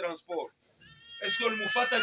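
A baby crying: one long high wail that begins about a second and a half in, over a man's voice. Speech is heard just before the wail.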